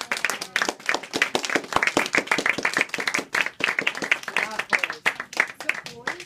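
Audience applauding: many hands clapping at once in quick, overlapping claps, thinning out near the end.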